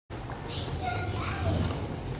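Indistinct chatter of several voices, children's among them, in a large echoing hall.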